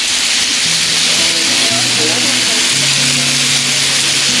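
Bison ribeye steaks and buttered rolls sizzling steadily on a blazing hot Blackstone flat-top griddle, a loud even hiss, with background music of low held notes underneath.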